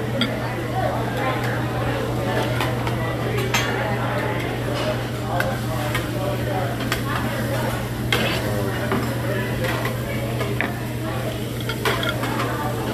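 Spoons and forks clinking and scraping on ceramic plates amid background restaurant chatter, over a steady low hum; the sharpest clinks come about three and a half and eight seconds in.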